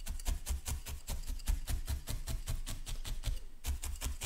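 A felting needle stabbing rapidly and evenly into wool on a cushion, each jab a soft thud with a faint scratchy click, several a second, as a fresh layer of wool is felted down.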